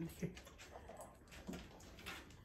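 Dog lapping water from a stainless steel bowl: faint, irregular wet laps.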